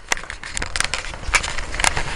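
Bicycle being ridden along a muddy, rough track: a steady low rumble of tyres and ground with several sharp, irregular clicks and crackles.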